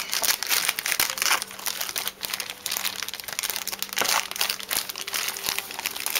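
Clear plastic bags crinkling and rustling continuously as the figure's wrapped pieces are handled and opened.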